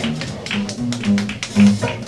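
Live traditional jazz band playing, with the string bass walking and the banjo and drums keeping a steady crisp beat at about four strokes a second in front.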